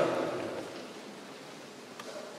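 The echo of a man's voice through the hall's loudspeakers dies away in the first half second. After that there is only a steady, even hiss of room noise.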